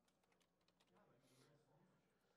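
Near silence, with faint computer keyboard typing: a scatter of soft key clicks.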